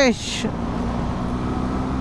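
Motorcycle engine running steadily at low road speed: a low, even drone with road and wind noise, after a brief hiss at the start.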